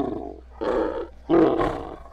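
An animal roaring: three rough, growling calls of about half a second each, the third the loudest.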